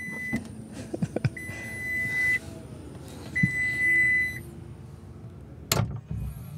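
Ford F-150 Lightning's power front-trunk lid closing: its warning beeper sounds three long steady beeps about two seconds apart, with a few clicks and a faint falling hum, and the lid shuts with a sharp thump near the end.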